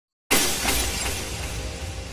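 Glass-shatter sound effect: a sudden crash about a third of a second in that fades away over a low rumble, with music coming in beneath it.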